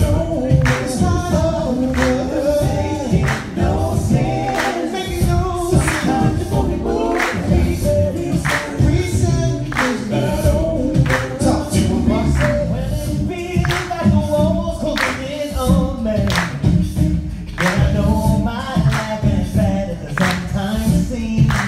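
Six-voice male a cappella group singing live through microphones in close harmony over a deep sung bass line. The singing is punctuated by a steady beat of sharp percussive hits.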